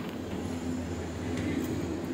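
Steady low mechanical hum of a gondola cable car station, its drive machinery and gondolas running through the station.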